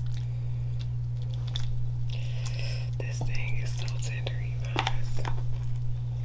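Close-miked eating sounds: wet mouth and lip sounds, chewing and small clicks as sauce-coated crab and seafood are picked apart by hand and eaten. A steady low hum runs underneath.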